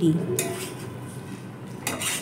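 Metal spatula scraping and stirring in a metal pan. Two scrapes stand out: one about half a second in and a louder one near the end.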